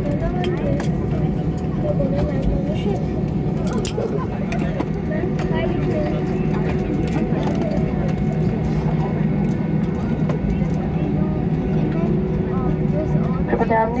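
Steady low drone of an airliner cabin after landing, with indistinct passenger chatter and a few sharp clicks.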